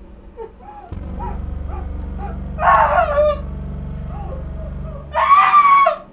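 A woman whimpering in short, wavering sobs, breaking into a loud scream twice, about two and a half seconds in and again near the end. A low steady drone sits underneath from about a second in until just after five seconds.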